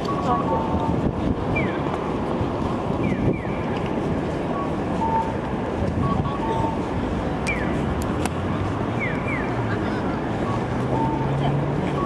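Audible pedestrian-crossing signal at a Japanese intersection: short electronic beeps, a higher note then a lower one in a cuckoo-like pattern, repeating every couple of seconds and answered by pairs of quick falling chirps. Underneath is steady street noise from traffic and people walking, with an engine hum coming up near the end.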